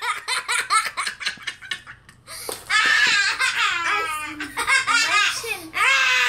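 Children laughing: a run of quick, short laughs, then from about halfway in, louder, higher-pitched, drawn-out laughter.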